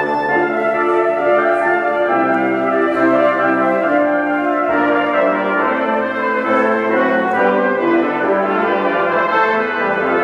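A brass quintet of two trumpets, French horn and two trombones playing together in chords, the harmony shifting every second or so.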